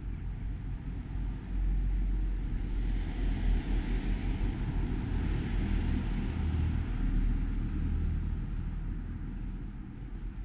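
Noise of a passing vehicle swelling and fading over about five seconds, over a steady low rumble.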